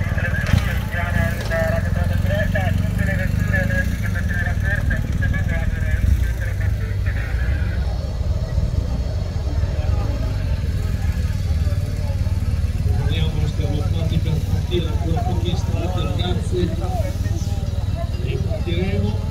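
Several people talking over a steady low rumble.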